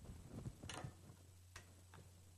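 Near silence: a low steady hum with a few faint, sharp clicks, the first about two-thirds of a second in and the next about a second later.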